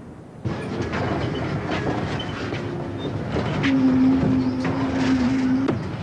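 A large vehicle going by, rattling and clattering, starting suddenly about half a second in, with a steady low tone held for about two seconds in the second half.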